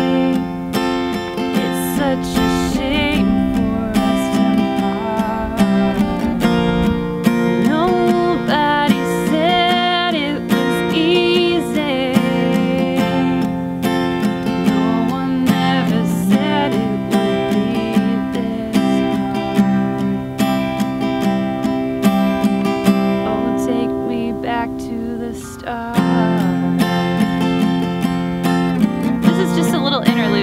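Breedlove steel-string acoustic guitar strummed with a capo at the third fret, moving through open D, A and G chord shapes in a steady, mostly downstroke pattern. The playing eases off briefly a few seconds before the end, then comes back in with a firm strum.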